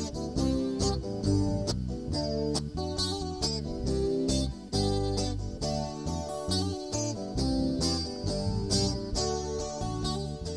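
Electric guitar and a second guitar playing an instrumental break in a country-folk song: picked notes in a steady rhythm over a low bass line, with no singing.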